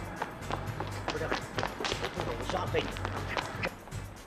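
Background music with a steady, pulsing bass line over running footsteps slapping on pavement, with brief vocal sounds in the middle.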